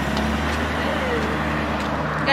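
A car driving by on the road, a steady noise of engine and tyres.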